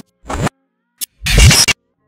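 Channel intro music with DJ-style record scratching, chopped into short bursts with abrupt silent gaps between them; the longest burst comes about halfway through.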